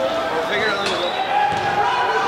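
Overlapping, indistinct shouting of players and spectators, echoing in a large indoor soccer hall, with a single thump of the ball about a second in.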